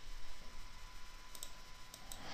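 Computer mouse clicks over faint room noise: two quick clicks about one and a half seconds in, then another just before the end.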